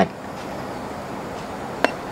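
A steady low background hiss while a button is held down on a Sony ICF-C1T clock radio, then near the end a single short "tup" from the radio as the long press takes and it enters clock-setting mode.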